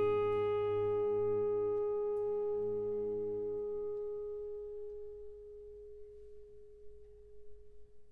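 Orchestra holding a long, soft chord. The lower voices fade out about halfway through, leaving a single pure high note that slowly dies away near the end.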